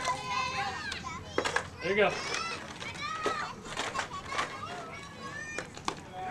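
Several girls' high-pitched voices calling and chattering at a distance, overlapping, with a few short sharp knocks among them.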